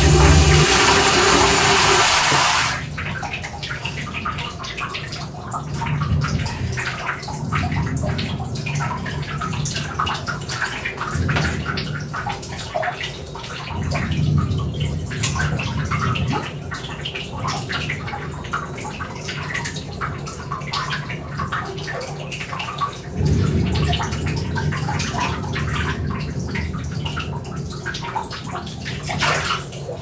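Water sounds: a loud rush of running water that cuts off about three seconds in, then a quieter stretch of irregular splashing and trickling with low swells that rise and fade every few seconds.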